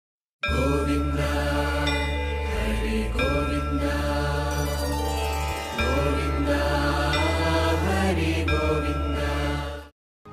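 Devotional intro music: a chanted mantra over a steady low drone, with ringing tones that start sharply and hold. It begins about half a second in and cuts off just before the end.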